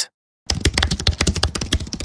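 A rapid run of sharp clicks, like keyboard typing, starting about half a second in after a moment of dead silence: a typing sound effect for an on-screen title.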